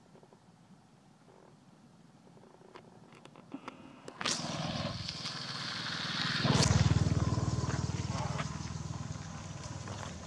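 A motor engine passing close by: it comes in suddenly about four seconds in with a pulsing low rumble, is loudest about seven seconds in, then slowly dies away.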